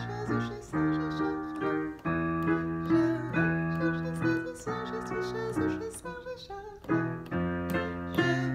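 Yamaha digital piano playing block chords that change every half-second to a second, as accompaniment for a vocal warm-up exercise.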